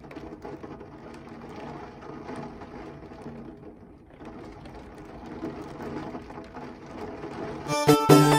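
Heavy rain pouring down outside a window, a steady hiss of water with the patter of drops. Loud music cuts in just before the end.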